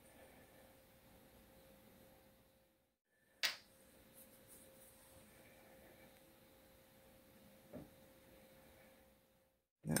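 Near silence with a faint steady hum, broken by one short click about three and a half seconds in and a fainter tick near the end. These are small glass essential-oil dropper bottles and their plastic caps being handled on a countertop.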